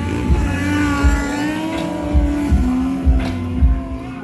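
Motorcycle engine held at high revs as a rider wheelies past. Its pitch climbs in the first second, holds, then drops a step about two and a half seconds in. Underneath is music with a thumping bass beat.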